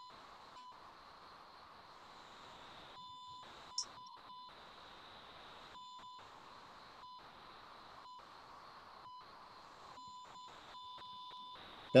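Faint steady hiss with a thin, steady high electronic tone on a video-call audio line, cutting out to silence for short moments several times. There is one short high chirp about four seconds in.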